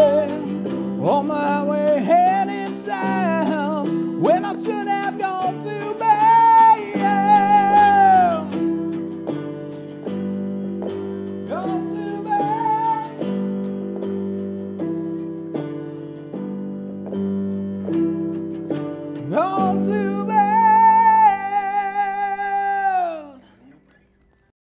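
A woman sings a rock song with vibrato over electric keyboard chords and a hollow-body electric guitar. Near the end the song closes on a long held sung note that falls away.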